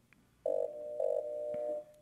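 Pitched tone from the robotic wall drill (built with Honeybee Robotics), played from the installation video through the hall's speakers. It starts about half a second in with two short louder beeps, then holds more softly until just before the end.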